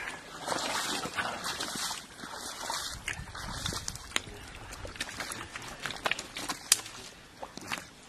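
Shallow muddy pond water sloshing and splashing as fish are caught by hand and put into plastic buckets, followed by a few sharp slaps and knocks in the second half.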